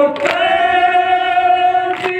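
A group of male mourners chanting a noha without instruments, holding one long steady note. Two sharp slaps of hands striking chests in unison (matam) keep the beat, one shortly after the start and one at the end.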